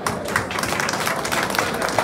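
Audience of seated guests applauding: many hands clapping at once in a dense, irregular clatter.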